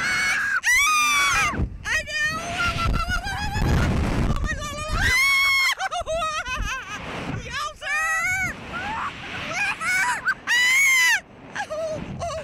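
Two riders, a teenage boy and a woman, screaming and yelling wordlessly as a slingshot ride flings and spins them. The screams are high and come again and again, some of them long and held, with wind rumbling over the microphone in between.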